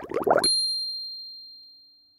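Channel logo jingle: a run of quick rising notes that ends about half a second in on a bright, high chime, which rings out and fades over about two seconds.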